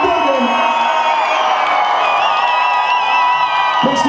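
Live electronic band music in a club: a held, layered vocal-and-synth chord with the bass dropped out, while the crowd cheers and whoops over it. The bass and beat drop back in just before the end.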